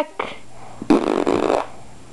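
A baby blowing a raspberry: a buzzing lip trill lasting under a second, about a second in, after a brief puff at the start.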